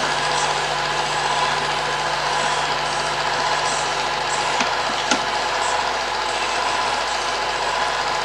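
Film projector running steadily, a continuous mechanical whir and rattle with a couple of faint clicks about halfway through.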